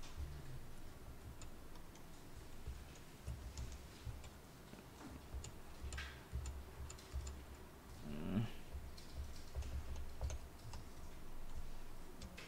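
Computer keyboard keys clicking in scattered, irregular keystrokes over a low hum.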